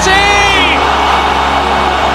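Football stadium crowd cheering a goal, with a commentator's long shout of "Messi!" in the first second and background music underneath.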